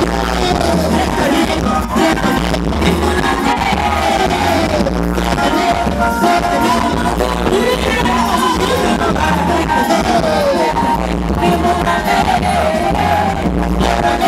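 Live pop song played loud through a concert PA, with a woman singing over a steady bass line.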